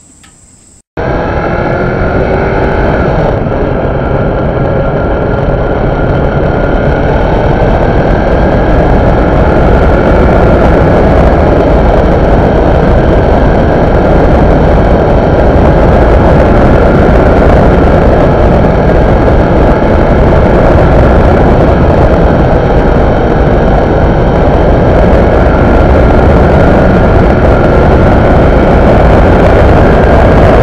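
Faint crickets chirping, cut off abruptly about a second in by a Kawasaki Ninja 650R's parallel-twin engine running at steady road speed, loud and mixed with heavy wind rush. The engine's pitch drifts slightly as the ride goes on.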